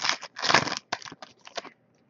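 Foil trading-card pack wrapper crinkling and tearing as it is opened and the cards are pulled out: a longer rustle about half a second in, then several short crinkles that stop shortly before the end.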